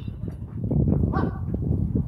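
The ring of a metal baseball bat that has just hit the ball, fading at the start. Then a steady low rumble, with a short high call about a second in.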